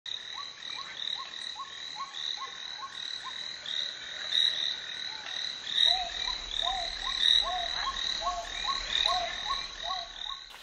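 A chorus of short animal calls repeated about three times a second over a steady high-pitched background. About six seconds in, a second, lower-pitched caller with arched notes takes over.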